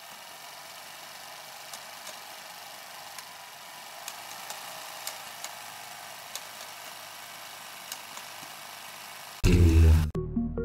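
A steady, thin hiss with faint scattered clicks, lacking any deep low end, as an intro sound bed for a rap track. About half a second before the end, the beat comes in loudly with deep bass.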